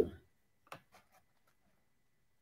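Near silence in a small room: a shout trails off right at the start, then one faint click about three quarters of a second in.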